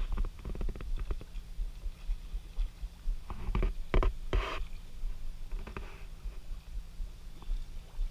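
Air bubbling up from an aeration (oxygen) hose into a fish pen, a low rumbling gurgle of water. A quick run of knocks and clatters comes about halfway through.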